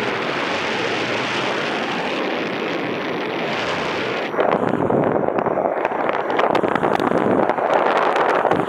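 Wind rushing over the microphone of a paraglider pilot in flight, from the airspeed through the air. It runs steadily at first, then about halfway through turns louder and gustier, with crackling buffets on the microphone.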